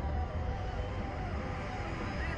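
Wind buffeting the microphone of a camera mounted on a Slingshot ride capsule as it swings high in the air: a steady low rumble with a hiss over it.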